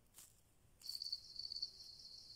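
Faint crickets chirping in a steady high trill that comes in about a second in.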